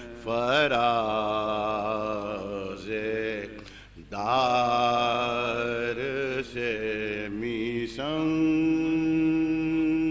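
Unaccompanied male chanting of soz, the Urdu elegiac lament of Muharram, in long wavering notes. There are three phrases with short breaths between them, and the last is a long steady held note.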